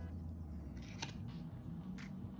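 Baseball trading cards being handled, the front card slid off the stack and tucked to the back, with a couple of short card clicks about a second in.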